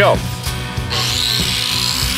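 Small electric angle grinder switched on about a second in and running steadily, ready to grind zinc drips off hot-dip galvanized steel.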